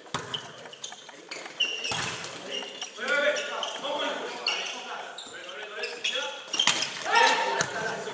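Volleyball rally in an echoing sports hall: the ball is struck with a few sharp smacks, about four over the stretch, two of them close together near the end, while players call and shout to each other.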